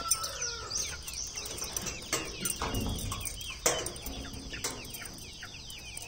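Many birds chirping and calling, short chirps overlapping one another, over a steady high hiss, with a few louder calls now and then.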